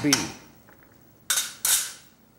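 Two sharp metal clanks about a third of a second apart, each ringing briefly: a metal spoon knocking against the cooking pot.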